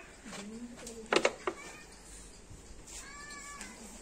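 A cat meowing, with a short pitched meow about three seconds in and shorter vocal sounds earlier.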